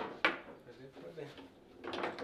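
Foosball table knocking: a sharp knock about a quarter second in, then lighter clicks of the ball and rods as the ball is put back into play after a goal.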